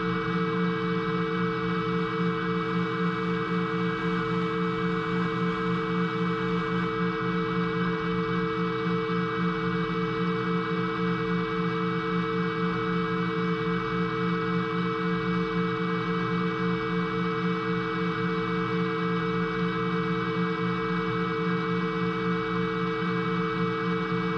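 Ambient background music: one steady drone of several held tones that does not change throughout.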